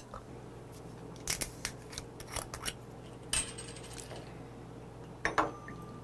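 Scattered clicks, clinks and knocks of a glass soju bottle and a small brass shot cup being handled as a fresh bottle is poured, with a short ring near the end.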